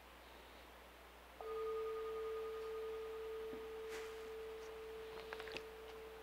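A meditation bell struck once about a second and a half in. Its single steady tone, with a fainter higher overtone, rings on and slowly fades.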